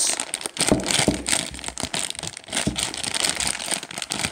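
Black plastic foil blind bag crinkling as it is handled, with dense, irregular crackles throughout and a couple of dull bumps from the figure inside.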